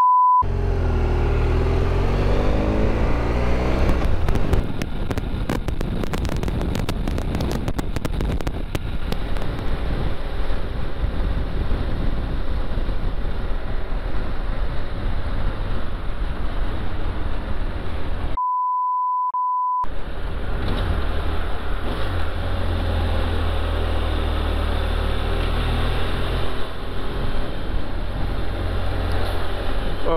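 BMW F800 GS Adventure motorcycle's parallel-twin engine running under way, with wind noise on the onboard microphone; the engine revs up and down in the first few seconds. A censor bleep, a steady high beep with all other sound cut out, sounds briefly at the very start and again for about a second and a half about two-thirds of the way through.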